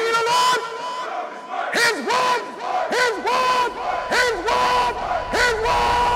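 Outro soundtrack of shouted, chanted voices: short calls that rise and fall, about two a second, over a held steady tone.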